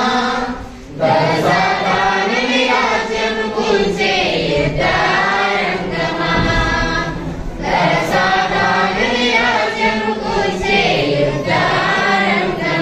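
Church congregation singing a hymn together, unaccompanied, with a short break for breath about a second in before the singing resumes.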